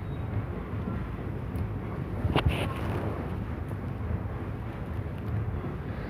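Steady low background rumble and hiss with no speech. A single short click comes about two and a half seconds in.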